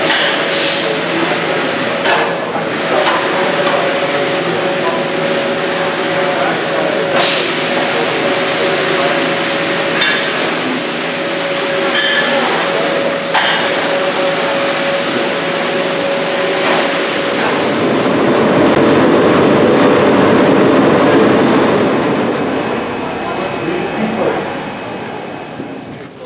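Footwear factory floor noise: machinery running with a steady hum and a held tone that stops about two-thirds of the way through, and a few sharp knocks and clanks. The noise swells louder for a few seconds near the end.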